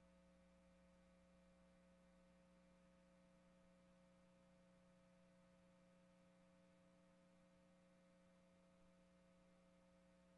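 Near silence, with only a faint, steady electrical hum in the audio line.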